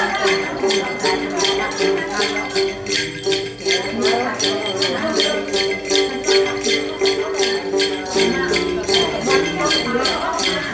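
Đàn tính, a long-necked Tày gourd lute, plucked in a steady figure over a bunch of small jingle bells (xóc nhạc) shaken in an even rhythm about four times a second.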